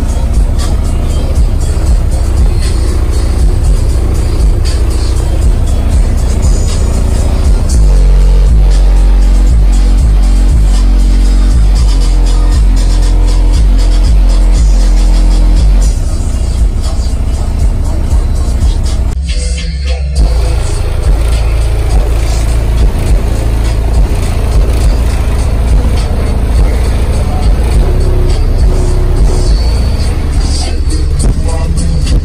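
Bass-heavy music played very loud through two 15-inch car subwoofers, heard from inside the vehicle. Deep bass notes dominate and are heaviest over the middle third. The music drops out briefly about two thirds of the way through.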